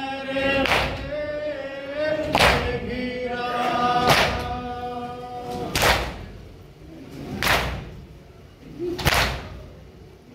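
Group of men chanting a nauha, a Shia lament, together, with a rhythmic matam of open-hand chest beats, six in all, about one every 1.7 seconds. The chanting thins out about six seconds in, leaving mostly the beats.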